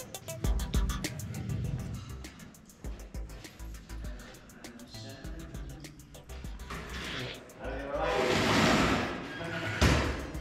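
Background music and voices in a snooker club room. About eight seconds in comes a loud noisy rush lasting a second or so: the bar being opened.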